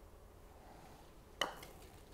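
Putter face striking a golf ball once, a single sharp click with a short ring about one and a half seconds in, from a putt made with neutral shaft lean.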